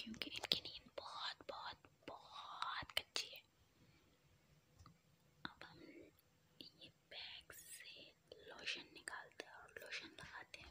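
Soft whispering in short phrases, with a quieter pause in the middle, and a few light clicks and rustles from a fleece blanket being handled.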